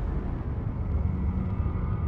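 A low, steady underwater rumble.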